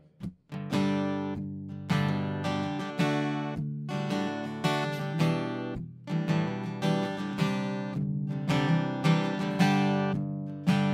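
Acoustic guitar strummed: a slow chord intro with a stroke about once a second, each chord left to ring and fade before the next. It starts about half a second in.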